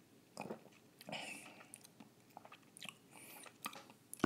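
A person sipping beer from a glass and swallowing: faint mouth sounds, with short sips near the start and about a second in, then a few small lip and tongue clicks.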